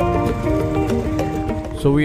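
Background music: a melody of short held notes over a steady low accompaniment. A voice begins speaking right at the end.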